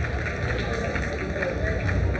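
Steady outdoor stadium ambience: a low hum with faint, indistinct background voices.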